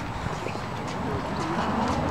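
Footsteps on a concrete sidewalk while walking, with people's voices talking faintly in the background.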